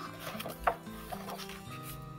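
Soft background music with held notes, over the rustle and rub of a hardcover picture book's paper page being turned by hand, with one sharper crackle of paper about two-thirds of a second in.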